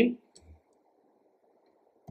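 A computer keyboard keystroke, a short faint click about half a second in, as code is typed and an autocomplete suggestion is accepted; a faint steady hiss lies under it.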